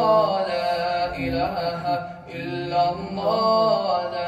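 A young man's solo voice chanting a naat, holding long notes that bend and waver in pitch.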